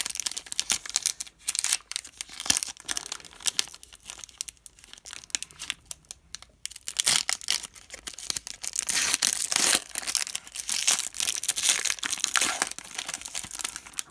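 Foil wrapper of a 2018-19 Upper Deck Series 2 hockey card pack crinkling and tearing as it is opened by hand, in irregular crackling bursts that grow busiest in the second half.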